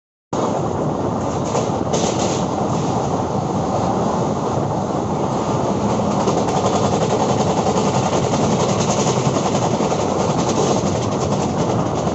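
Indian Railways passenger train running, heard from the open door of a coach: a loud, steady noise of wheels on the rails and the moving coach.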